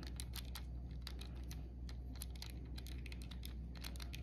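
Light, irregular clicks, several a second, from fingers and a small screwdriver working on a plastic car key fob as it is put back together.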